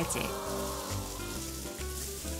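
Thin pancake batter sizzling on hot, oiled round griddle pans, a steady frying hiss, with soft background music underneath.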